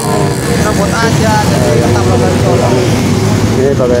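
A stream of motorcycles and scooters passing close by, their small engines running in a steady dense rumble, with indistinct voices of people talking over it.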